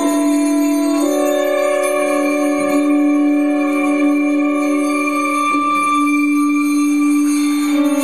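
Free-jazz quartet improvising live on soprano saxophone, electric guitar, upright bass and drums, in long held, ringing notes that shift pitch every few seconds with no steady beat.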